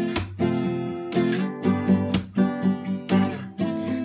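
Acoustic guitar being strummed in chords, a sharp strum roughly once a second with the chord ringing on between strokes, and no voice.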